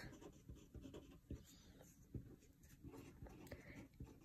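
Faint scratching of a pen writing on paper, in short, irregular strokes.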